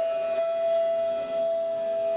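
Bamboo bansuri (side-blown flute) holding one long, steady note, with a fainter lower note sounding underneath.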